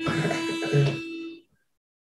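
A single steady reed note blown on a small mouth-held pitch instrument, held about a second and a half before it stops: the starting pitch given for unaccompanied singing.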